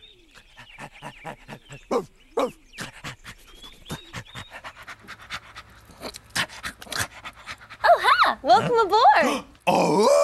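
A dog panting quickly and irregularly, with a few short pitched squeaks in between. Near the end there is a louder vocal sound that rises and falls in pitch.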